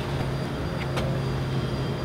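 A steady low machine hum that starts suddenly, with one sharp click about a second in.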